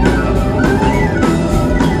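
Celtic folk-rock band playing live with no singing: a steady drum-kit beat with electric guitar and bass under a bowed fiddle melody.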